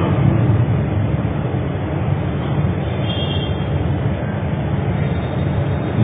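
Steady low background rumble with no speech, holding at an even level; a faint higher tone comes in briefly about halfway through.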